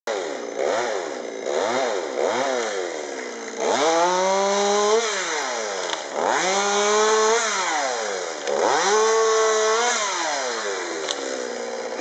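Two-stroke chainsaw revving up and down: three quick blips of the throttle, then three longer runs held at high revs for about a second each before dropping back.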